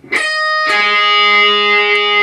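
Electric guitar with the high E and B strings picked together, the index finger barring the 10th fret and the third finger on the 12th fret of the high E. A short note sounds at the start, then a second pick about two-thirds of a second in rings on.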